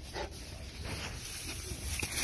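A mastiff sniffing and nosing through loose straw, a few short sniffs and straw rustling that grow a little louder near the end, as it searches the hay bales for a rat's scent.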